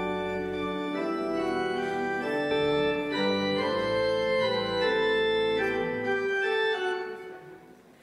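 Church organ playing held chords that change every second or so, then dying away and stopping about a second before the end.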